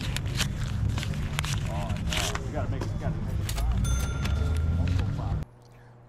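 Open-air market background: distant voices over a low rumble of wind on the microphone, with scattered clicks. About five and a half seconds in, it cuts off abruptly to a faint low hum.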